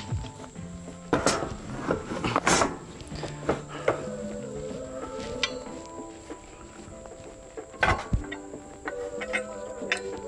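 Metal climbing tree stand sections clanking and rattling as they are handled and set onto an ATV's rack, with a few sharp knocks, loudest about a second in, around two and a half seconds and near eight seconds. A steady high insect buzz and background music run underneath.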